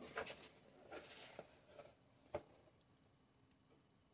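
Faint rubbing and scraping of hands on a cardboard toy box as it is handled and turned over, with one sharp tap a little over two seconds in.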